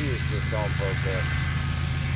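A steady low engine hum with faint talking over it in the first second.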